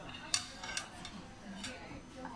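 Metal ladle clinking against a metal shabu-shabu hot pot: about four sharp clinks, the loudest about a third of a second in.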